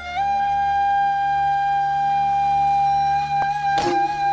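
Background music: one long held note over a steady low drone, with a sharp percussive hit near the end.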